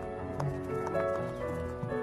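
Soft melodic background music, with a few small clicks and pops from fingers pressing into a thick, airy black-grey slime.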